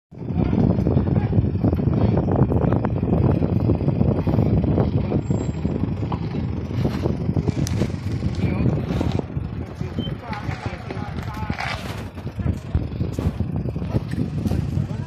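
Toyota Land Cruiser Prado 4x4's engine running at low revs as it crawls down a rocky ledge, with people's voices in the background.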